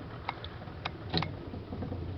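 A boat's motor running with a low, steady hum, with a few light clicks in the first second or so.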